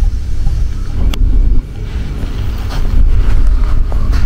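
Loud, uneven low rumble on a handheld microphone outdoors, the buffeting of wind and handling noise, with a sharp click about a second in and a couple more near the end.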